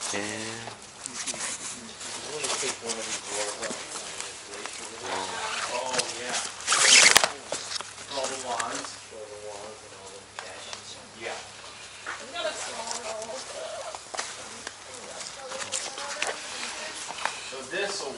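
Indistinct voices of people talking, with the rustle of nylon cord and backpack fabric being handled as the cord is tied to the pack. A louder burst of rustling noise comes about seven seconds in.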